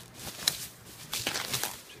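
Thin plastic packing sheet rustling and crinkling as it is handled and pulled back off a guitar in a foam-lined box, in irregular bursts with a sharp snap about half a second in.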